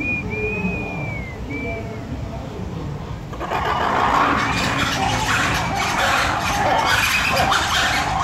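A man's imitation hawk call, a high thin call in three parts, the long middle one falling at its end. About three and a half seconds in, red-ruffed lemurs break into a loud squealing alarm chorus, their reaction to the predator call, which keeps going after that.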